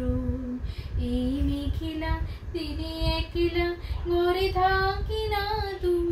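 A woman singing a Bengali song solo, with no accompaniment. She holds long notes with vibrato, and the melody climbs higher after about two seconds.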